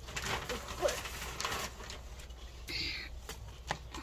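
Gloved hands working potting soil around succulents in a clay jar: scattered rustling and scraping, with a short hiss of soil poured from a plastic scoop near the end.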